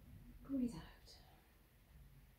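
A woman's voice saying a brief, soft word about half a second in, against the quiet hum of a room.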